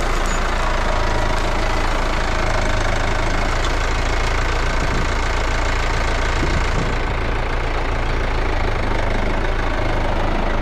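A New Holland tractor's diesel engine running steadily close by while its front loader lifts and sets a round hay bale.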